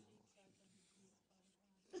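Near silence: faint room tone with a soft breath in a pause between sung phrases.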